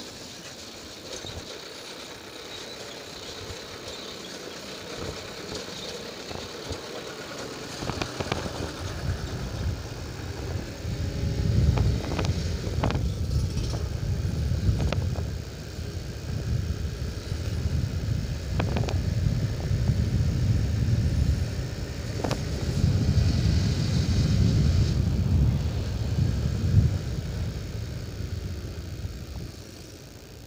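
Honda CB150R single-cylinder motorcycle under way, its engine running while a rough, uneven rumble builds on the microphone about ten seconds in. A few sharp knocks come from bumps in the broken, patched road surface.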